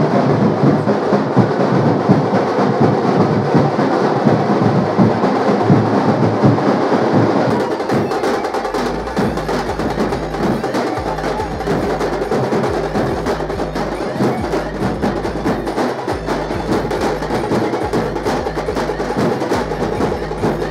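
Loud, continuous percussion music: fast drumming with a sharp clacking layer. About seven seconds in the sound changes and a low hum comes and goes beneath it.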